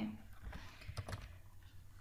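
A few faint, sharp clicks close together, about half a second to a second in, over a low steady hum.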